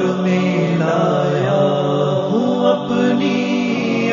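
Music: a man's voice chanting a slow devotional melody, holding long notes that waver and glide.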